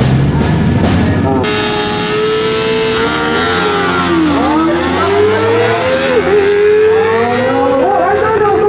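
Two sport motorcycles, a Honda CBR and a Kawasaki Ninja, revving at a drag-race start line and then launching hard. About a second and a half in, the engine note jumps up and climbs, dropping and climbing again at each upshift as the bikes accelerate away.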